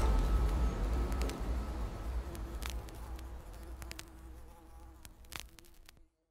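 A fly buzzing, fading away gradually, with a few faint clicks.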